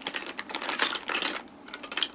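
Small hard objects handled close to the microphone: irregular clusters of sharp clicking and clattering, several clicks a second.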